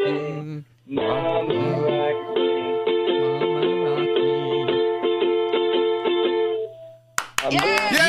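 A ukulele strummed a few times a second under held sung notes, heard through a telephone line that cuts off the high end. Near the end it breaks off, and a few clicks and a different, full-range sound with gliding pitches follow.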